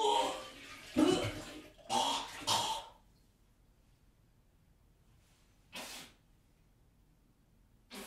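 A person's breathy vocal sounds: four short, sharp gasps or exhalations in the first three seconds. Two brief, faint soft sounds follow later.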